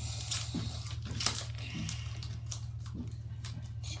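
Foil Pokémon booster pack wrapper crinkling and rustling as it is handled, with scattered light clicks and taps, over a steady low hum.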